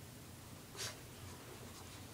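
Faint rustling and scratching as a Shih Tzu noses and digs at a plush toy on carpet, with one short scratchy burst a little under a second in.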